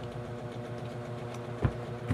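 A steady low mechanical hum, like a small motor running, with a single sharp thump about a second and a half in.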